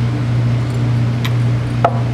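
Steady low electrical hum with background hiss, and a single sharp clink near the end, a drinking glass set down on a tabletop.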